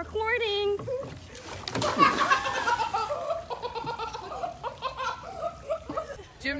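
A short vocal call, then a sudden loud impact about two seconds in, as a diver hits the water from a pool diving board, followed by several people laughing and shrieking.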